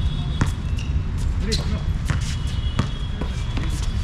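A basketball bouncing on an outdoor hard court at an irregular pace, with thin, high sneaker squeaks and a steady low rumble underneath.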